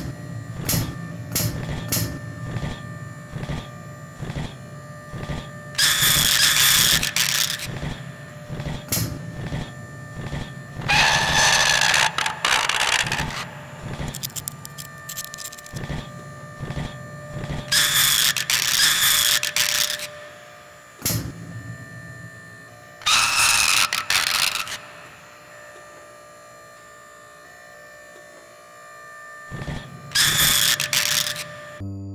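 Robot movement sound effects: a string of sharp mechanical clicks at first, then four loud whirring, hissing bursts of a second or two each, spaced several seconds apart, over a faint steady hum.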